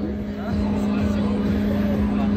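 Pirate-ship swing ride's drive machinery running with a steady low hum and rumble as the ride gets going slowly.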